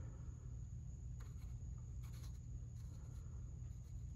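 Faint scraping and a few light clicks of fingers turning the knurled bezel of a dial indicator to zero it, over a low steady hum.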